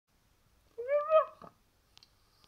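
A single cat meow about half a second long, its pitch rising slightly and then dropping at the end, followed by a faint tick.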